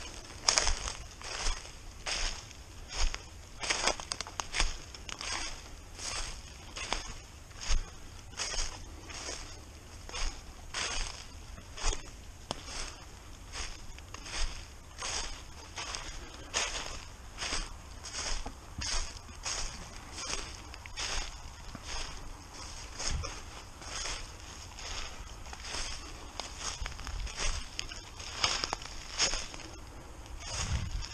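Footsteps crunching through a thick layer of dry fallen leaves at a steady walking pace, about two steps a second.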